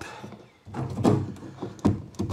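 A plastic PEX elbow fitting is pushed and worked into a pre-drilled hole in wooden framing, scraping and rubbing against the wood, with a sharp knock near the end.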